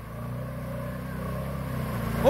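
Arctic Cat 500 ATV's single-cylinder four-stroke engine running steadily as it pulls through the mud, getting gradually louder.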